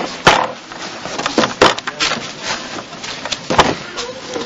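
A congregation stirring in a church between the sermon and a hymn: scattered sharp knocks and thuds with rustling. The clearest knocks come about a third of a second in, around a second and a half, and near the end.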